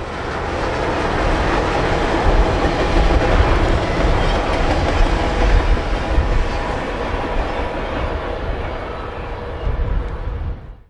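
Union Pacific passenger cars rolling past on the rails: a steady rumble and rail noise that rise at the start and ease off slowly in the last few seconds as the train moves away.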